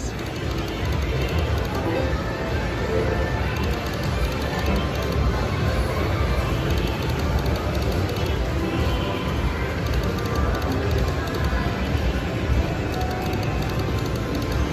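Sound effects and jingles from an AGS Rakin' Bacon video slot machine as it runs spin after spin, over a steady wash of casino background noise.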